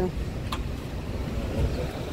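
Low, steady rumble of vehicle noise, with one brief click about half a second in.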